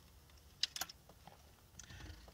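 A few faint, short clicks a little over half a second in, over quiet room tone.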